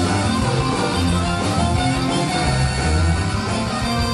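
Live rock band playing: distorted electric guitars over bass guitar and a drum kit, loud and continuous.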